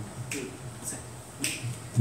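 Three finger snaps, evenly spaced about half a second apart: a tempo count-in just before an a cappella group starts singing.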